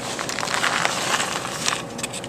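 Dry quick-cooking oats and other dry ingredients poured off a plate into a metal mixing bowl: a continuous rustling hiss of sliding flakes with many small ticks and scrapes.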